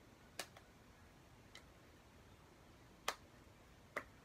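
A handful of short, sharp plastic clicks and taps, about five in four seconds and the loudest about three seconds in, as a phone is pressed into a clear plastic phone case. Between the clicks it is near silent.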